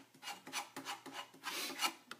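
A quick series of irregular scrapes as homemade diamond polishing paste is worked with a small tool, taken up from its container and smeared onto a hard felt polishing wheel, about three or four strokes a second.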